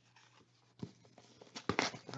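Trading cards and packs being handled on a table: a soft tap a little under a second in, then a few quick clicks and rustles near the end.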